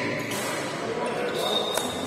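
A basketball striking the hardwood court amid players' voices, echoing in a large sports hall, with one sharp impact near the end and a short high squeak over it.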